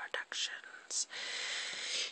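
Handling noise from a phone being swung around in the hand: a few soft knocks, then about a second of steady rustling hiss.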